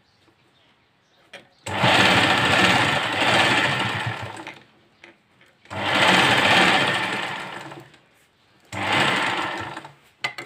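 Sewing machine stitching fabric in three runs, the first about three seconds long, the second about two and a half, the last about a second and a half, each starting abruptly and fading as the machine slows to a stop.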